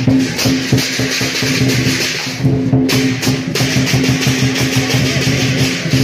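Hakka lion dance percussion playing live: a big drum beaten in dense strokes with crashing cymbals over steady ringing tones. The cymbal wash breaks off briefly about halfway through, then comes back in.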